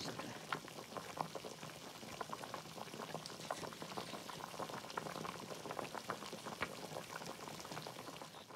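Hot pot broth boiling hard in a large steel pot: a steady, dense crackle of bubbling.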